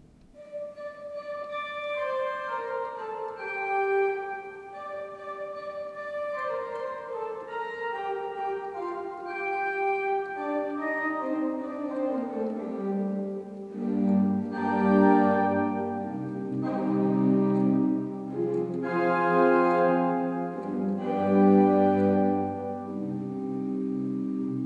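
Pipe organ played from a MIDI keyboard: a slow passage of held notes stepping downward. About halfway through, fuller chords and a bass line come in, and the playing grows louder.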